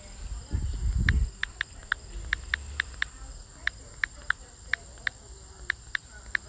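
Touchscreen keyboard key-tap sounds from a smartphone: about fifteen short, sharp clicks at an irregular typing pace as a search phrase is typed. A low rumble comes near the start, under a steady faint high-pitched whine.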